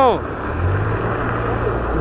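Street traffic noise: an even hiss of traffic over a steady low engine hum.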